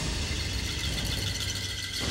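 Dramatic TV-serial background score held on a low, steady rumble, with a few faint high tones sustained above it.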